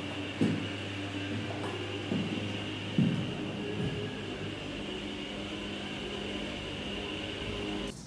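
Steady low hum and hiss of an empty, unfinished room, with a few soft thumps in the first half.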